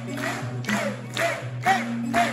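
Live acoustic guitar playing an instrumental intro: sustained low notes under strums that repeat about twice a second.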